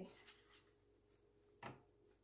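Near silence: room tone with a faint steady hum, and one short tap about three-quarters of the way through.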